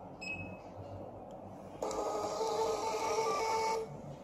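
Thermal printer of a Balaji BBP billing machine printing a bill: a steady mechanical run of about two seconds, starting near halfway and stopping sharply. A short beep from the keypad comes just before, as the Bill option is pressed.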